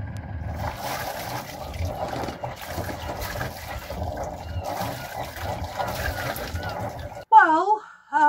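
Sailing yacht's inboard diesel engine idling just after starting, its wet exhaust splashing cooling water out at the stern in a steady gush. The start is the test of newly fitted batteries, and it has succeeded. A woman's voice near the end.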